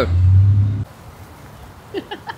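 A loud, steady low rumble cuts off abruptly under a second in, leaving quiet outdoor background.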